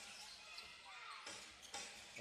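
A basketball dribbled on a hardwood court, a few sharp bounces heard faintly over arena crowd noise.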